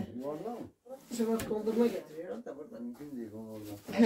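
Speech only: quiet talking voices in a small room, with no other sound standing out.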